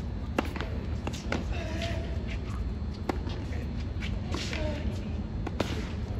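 A tennis serve and rally heard at a distance: sharp pops of the ball on racket strings about a second or two apart, first just under half a second in, over a steady low rumble.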